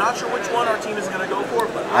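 People talking, with the background chatter of a crowd.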